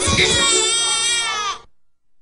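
A cartoon character's high, wavering crying wail that slides down in pitch and cuts off suddenly about a second and a half in.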